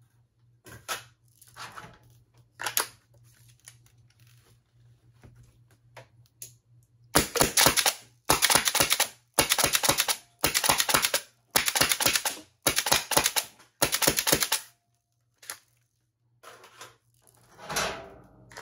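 Compressed-air-powered Nerf blaster firing in short bursts of rapid shots, a solenoid valve and pneumatic pusher clacking with each dart, about seven bursts roughly a second apart in the middle of the stretch. The blaster is set to three-round burst. Before and after the firing come a few scattered clicks and knocks of the blaster being handled.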